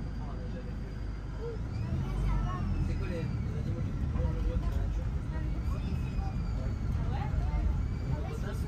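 Engine and road rumble of a Volare minibus heard from inside the cabin, growing louder about two seconds in, with faint voices of passengers.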